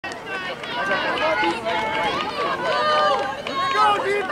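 Several voices talking and calling out at once, overlapping chatter with no clear words.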